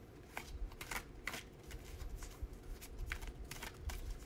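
Tarot cards being shuffled by hand: a series of short, crisp card riffles at an uneven pace.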